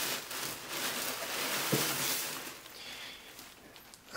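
Tissue paper rustling and crinkling as a hat is lifted out of a gift box lined with it, dying away about three seconds in.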